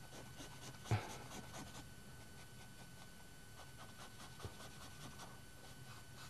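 Faint scratching of a drawing stick hatching shading strokes on paper, with a brief soft thump about a second in.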